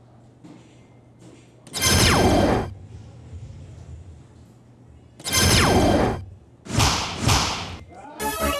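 Electronic soft-tip dartboard machine playing its hit sound effects as darts land: a loud falling swoosh about two seconds in, when a triple 16 registers, another about five seconds in, then two shorter bursts near the end.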